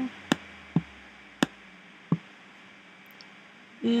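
Four sharp, single computer mouse clicks, irregularly spaced over the first two seconds or so.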